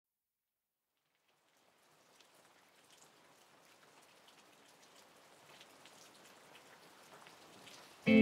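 Faint rain fading in slowly from silence: a steady hiss with scattered single drops ticking.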